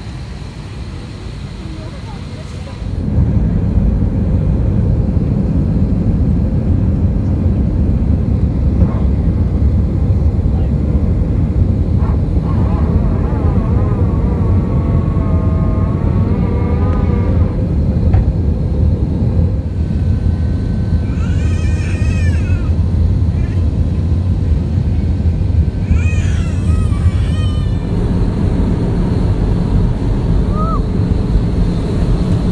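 Jet airliner cabin noise during takeoff and climb: a steady low rumble from the engines and airflow that comes in suddenly and much louder about three seconds in, after a quieter cabin hum. Voices rise over it a few times.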